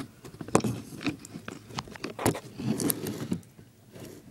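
Small hard objects being handled and set down on a table: a string of separate light clicks, knocks and scrapes that thin out near the end.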